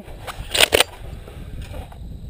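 A pump-action shotgun firing at a thrown clay target: a sharp crack about half a second in, with a second crack a moment after it.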